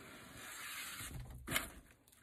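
Plastic deco mesh wreath on a wire frame rustling as it is turned over by hand: a soft rustle lasting about a second.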